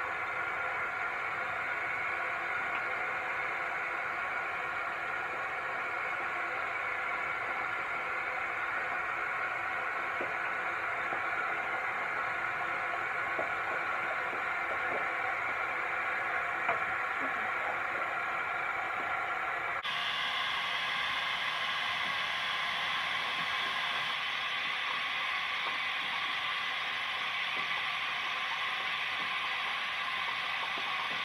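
Water running steadily from a tap into a sink, a constant rushing hiss whose tone shifts abruptly about twenty seconds in.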